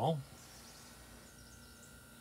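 A man's spoken word trails off, then near silence: faint room tone, with a faint thin steady tone coming in about midway.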